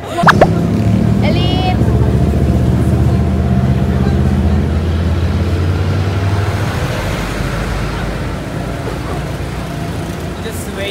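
A brief shrill rising cry about a fraction of a second in, then a nearby vehicle engine running with a low steady rumble that thins out in the last few seconds.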